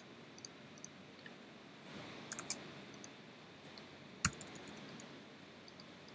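Faint, scattered clicks of a computer mouse and keyboard keys over quiet room tone, with a small cluster about two and a half seconds in and one sharper click just after four seconds.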